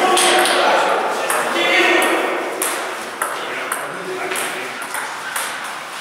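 Table tennis rally: a run of sharp clicks as the plastic ball is struck by the bats and bounces on the table, with voices in the background early on.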